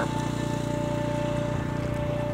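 Two steady high tones held over an even low hum; the higher tone stops near the end.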